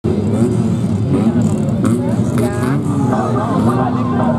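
A field of autocross cars running on the start line, their engines idling and revving over one another, with voices heard over them.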